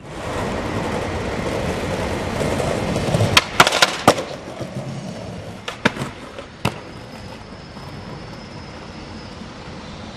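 Skateboard wheels rolling over hard ground, with a cluster of sharp clacks from the board striking the ground about three and a half to four seconds in. A few more clacks follow around six seconds, then the rolling goes on more quietly.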